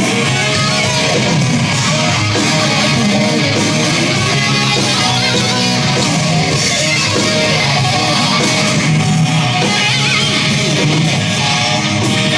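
A live rock band playing loudly: electric guitars over drums, the sound running on steadily without a break.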